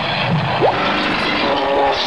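Cartoon sound effects over a steady rushing, bubbling noise, with quick rising whistles and a few held musical tones near the end, as a stain is magically scrubbed out in a burst of bubbles.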